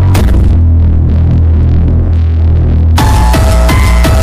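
Electronic dance music from a DJ set. It opens with a hit, then a heavy throbbing bass runs on its own with little treble. About three seconds in, the full beat drops back in with drums and a repeating synth melody.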